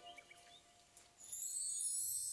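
The last held note of a short music cue fades out, followed by a brief lull. A high, shimmering transition sound then swells in during the second half.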